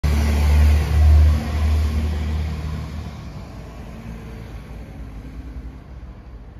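A car's engine running as it drives by, loudest about a second in, then fading away over the next few seconds.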